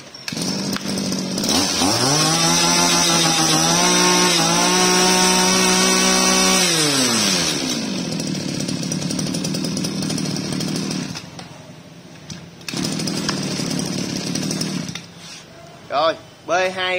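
Shindaiwa 23cc two-stroke brush-cutter engine, with a freshly fitted carburettor, starting and idling. It is then revved up to a high steady whine for about five seconds, falls back to idle, and keeps idling.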